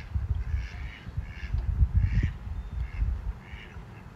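Mallard ducks quacking faintly in a steady string of short calls, about two a second, over a loud low rumble on the microphone.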